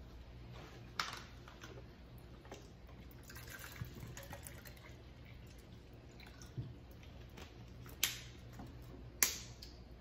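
A metal spoon clicking a few times against a ceramic bowl as chili is scooped and eaten. The sharpest clicks come about a second in and twice near the end, over a low steady hum.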